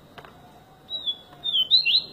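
Caged papa-capim, a Sporophila seedeater, singing: from about a second in, a quick phrase of high, slurred whistled notes that glide up and down, growing louder toward the end.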